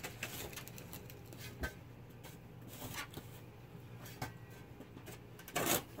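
Shovel scraping and scooping loose dirt: scattered light crackles of soil, then one short, louder rasp of dirt near the end.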